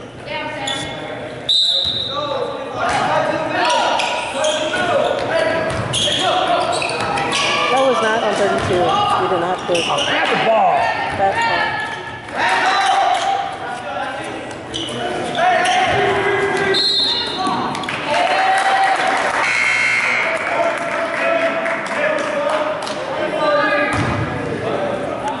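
Indoor basketball game: the ball bouncing on the hardwood court amid indistinct shouts and calls from players and spectators, echoing in the gym.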